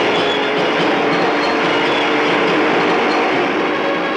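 Long-tail boat engine running at speed, a loud, steady, rough mechanical noise.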